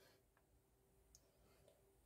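Near silence: room tone inside a car cabin, with a few very faint clicks.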